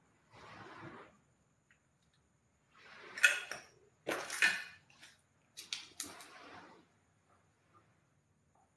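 Slow footsteps crunching and crackling over broken ceiling-board debris and rubble, four uneven steps with sharp cracks in the middle ones.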